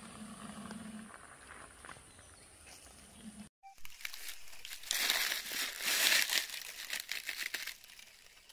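Dry fallen leaves crackling and rustling as they are disturbed, loud and dense for about three seconds in the second half, after a brief dropout. The first half holds only faint sounds.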